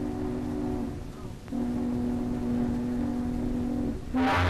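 A ship's horn sounding in two long, steady blasts with a gap of under a second between them, each blast holding two pitches at once.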